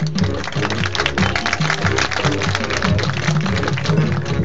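High school marching band playing its field show: brass and woodwinds over a moving bass line, with drumline and front-ensemble percussion keeping up fast strokes throughout.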